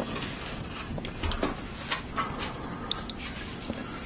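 Faint scratching and scattered small clicks of fingers working over a phone screen's glass in a glass dish of isopropyl alcohol, scraping off dried UV bonding liquid.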